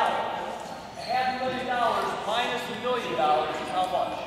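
Speech: a person talking in a gymnasium, the voice echoing off the hall.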